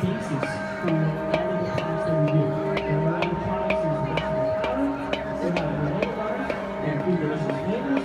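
Large Tibetan singing bowl, with a person standing inside it, struck again and again on its rim with a padded mallet, about two strikes a second, ringing with a steady sustained tone that builds under the strikes.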